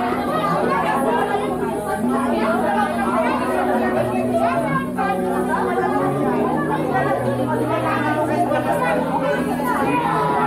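Many people talking at once in a room, with music playing underneath.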